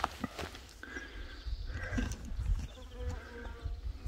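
Faint animal calls, short and pitched, over a low rumble of wind on the microphone, with a few faint clicks.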